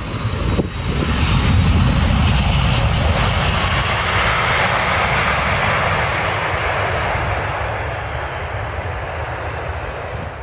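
Boeing 747-400's four jet engines running loudly as the airliner rolls out along the runway after touchdown. The sound swells over the first two seconds, then slowly fades as the aircraft decelerates away, with a faint high whine near the start.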